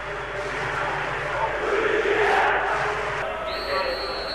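Steady noise of a large stadium crowd waiting for kick-off. About three and a half seconds in, a long high-pitched referee's whistle starts, signalling the kick-off.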